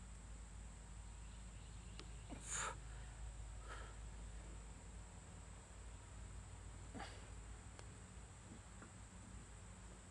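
A few short, sharp breaths from a man straining through a push-up, the loudest about two and a half seconds in, over a faint steady hum.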